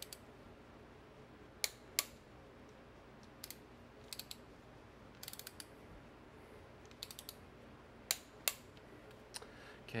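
A click-type torque wrench ratcheting on the intake manifold bolts of a Chevy 350 small block V8 as they are tightened in a crisscross sequence. There are sharp single clicks in two pairs, one near the start and one near the end, and short quick runs of ratchet clicks between them.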